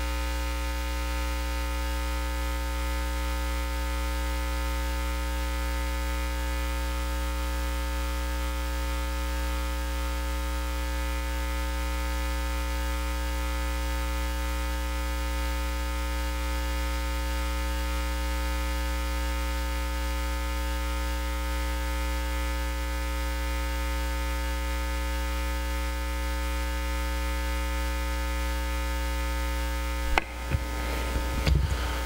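Steady electrical mains hum: a low buzz with many even overtones, unchanging throughout, over faint hiss.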